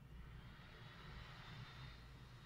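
Near silence: room tone with a faint steady low hum and hiss.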